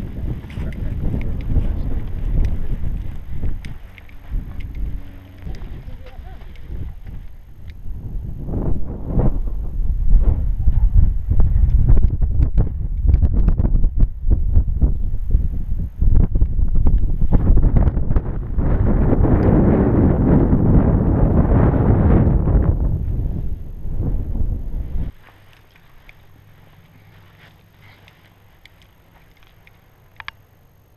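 Wind buffeting a body-worn camera's microphone while walking, a loud rumble with gusts that swell strongest for several seconds. It cuts off abruptly about five seconds before the end.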